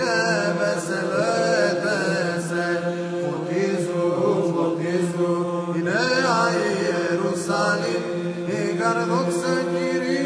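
Orthodox Byzantine-style church chant: a man's voice sings a slow, richly ornamented melody over a steady held drone (ison).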